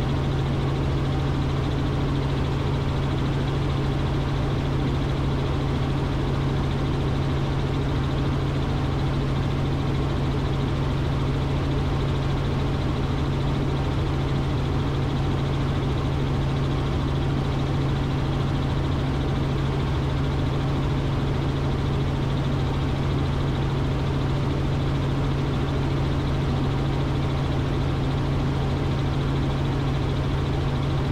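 Robinson R44 helicopter in steady cruise flight, heard inside the cabin: a constant drone of engine and rotor with a strong low hum over an even rushing noise, unchanging throughout.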